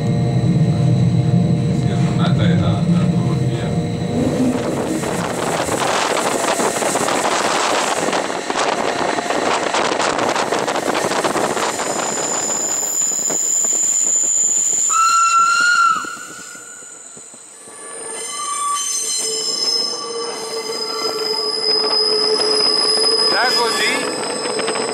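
Bernina Express train running on its metre-gauge line, heard from inside the carriage. A deep rumble with steady tones opens the sound, then the rolling noise of wheels on rail, then long, steady, high-pitched wheel squeals on curves in the second half. The noise drops away sharply for a couple of seconds about two-thirds of the way through.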